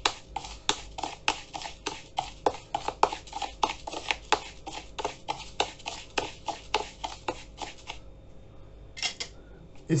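A metal spoon stirring a dry mix of salt, sugar and ground spices in a plastic bowl: quick rhythmic scrapes and clicks, about three a second, that stop about eight seconds in.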